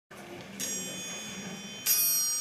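Cimbalom struck twice, about half a second in and again near the end, its strings ringing on after each stroke.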